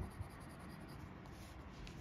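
Fine nib of a Caran d'Ache Dunas fountain pen scratching faintly on paper as it draws quick back-and-forth hatching strokes, with a light tick near the start.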